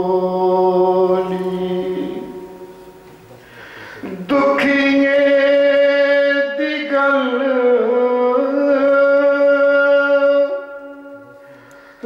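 A man's voice singing devotional verse, a naat, in long held notes. The first phrase fades away about two seconds in. A loud new phrase starts sharply about four seconds in, is held with slow shifts in pitch, and fades near the end.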